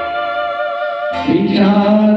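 Male voice singing a Malayalam film song over recorded instrumental accompaniment; a long held sung note comes in a little past halfway.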